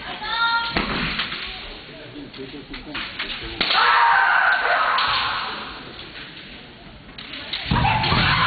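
Kendo fighters' kiai shouts, high drawn-out cries, with sharp cracks of bamboo shinai strikes and foot stamps on the wooden floor, about a second in, near four seconds and again near the end.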